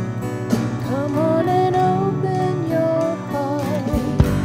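Live song: an acoustic guitar is strummed under held keyboard chords, with a sung melody rising and holding in the middle.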